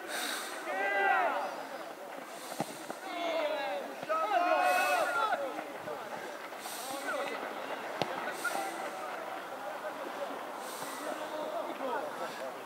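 Distant voices of youth football players shouting and calling out during play, loudest about a second in and again around four to five seconds in. Two sharp knocks stand out, one about two and a half seconds in and one near eight seconds.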